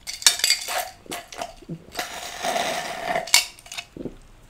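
Clicks and rattling clatter from a clear plastic cup with a straw being handled among tableware: a few sharp clicks in the first second, then a denser rattle from about halfway, ending in one sharp click.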